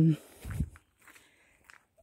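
The end of a drawn-out spoken 'um', then a single soft, low thud about half a second in.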